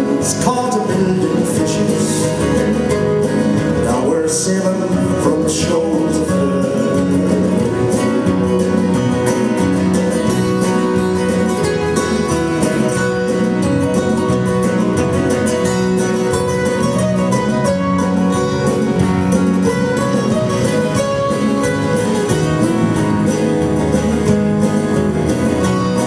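Live acoustic folk band playing, with strummed acoustic guitars and a mandolin.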